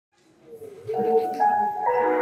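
Instrumental backing track fading in from silence over about the first second, then held notes stepping between pitches as a pop song's intro begins.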